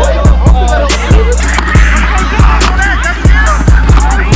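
Background music with a heavy beat: deep bass drum hits that drop in pitch, several to a second, over fast hi-hat ticks.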